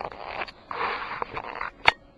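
Soft rustling handling noise for about a second, then one sharp click near the end as the metal power-supply case is handled.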